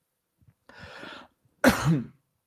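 A man coughs once, loudly, near the end, after a softer breathy sound about a second in.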